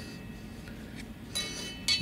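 Faint handling noise as a steel sword blade is turned over and a flashlight is brought up against it, over a low steady room hum. There is a small tick about a second in and a short hiss near the end.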